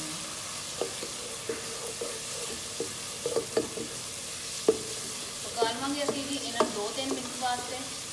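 A wooden spatula stirring and scraping frying onion-and-spice masala with fresh tomato slices in a nonstick pot, in irregular strokes over a steady sizzle.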